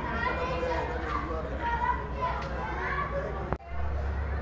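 Several people's voices talking and calling out on the platform, over a steady low hum. The sound breaks off briefly with a click near the end.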